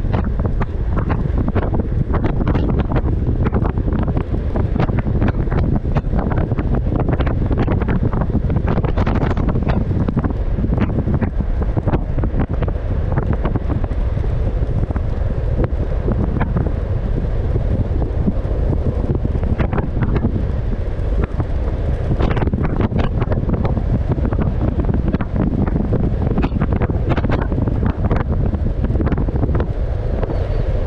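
Heavy wind buffeting the microphone of a camera on an electric scooter moving at around 40 to 55 km/h: a loud, steady, deep rush, broken by frequent small clicks and knocks.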